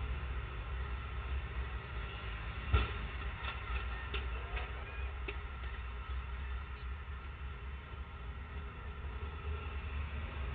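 Steady low rumble of passing road traffic. About three seconds in comes a single sharp crash as a motorcycle goes down on the road, followed by a few lighter clatters over the next couple of seconds.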